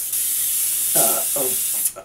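A hand-held spray bottle misting glue solution onto dry enamel powder on a copper dish, one steady hiss lasting nearly two seconds that starts and stops sharply. The glue dampens the powder so the next sifted layer of enamel will stick.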